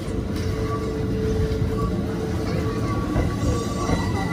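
Keikyu electric train passing close by: steady running noise of wheels on rails, with a steady mid-pitched tone held through most of the pass.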